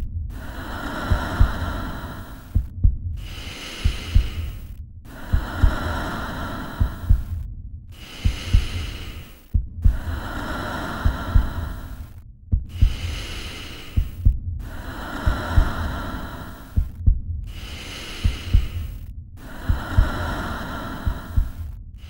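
A looped sound bed of low, heartbeat-like thumps under a steady hum. It repeats in segments about two seconds long, broken by short silent gaps, with a faint falling high whistle in every other segment.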